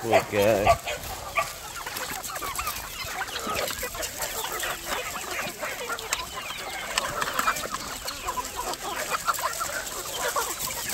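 A large flock of free-range chickens clucking and calling all at once. A loud wavering call comes in the first second.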